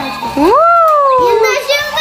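A child's long drawn-out exclamation that rises in pitch and then slowly falls, with shorter bits of children's voices around it. Tinny music plays underneath from a battery-powered duck staircase track toy.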